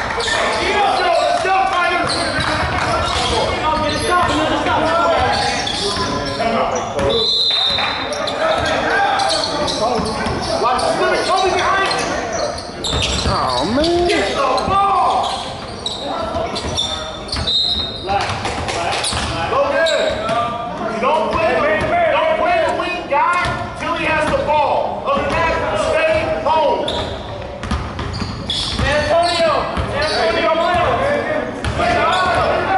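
A basketball game in a gymnasium: a ball bouncing on the hardwood court amid players' and spectators' shouting voices. Two short, high whistle blasts sound, about seven seconds in and again around eighteen seconds.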